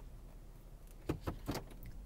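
A few soft clicks from the heated-seat and heated-steering-wheel buttons on a car's centre console being pressed, about a second in, over a low steady hum in the cabin.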